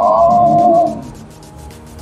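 A man's long, drawn-out 'ooh' of delight at the taste, slowly falling in pitch and ending about a second in, over background music.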